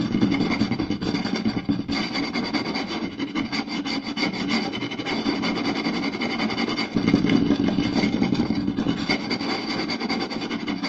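Fingers scratching and tapping fast on a round wooden plate: a dense, unbroken stream of quick scratches and taps, a little louder in the first two seconds and again from about seven seconds in.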